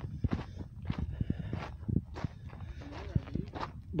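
Footsteps on a wet gravel and mud track, irregular steps a few per second.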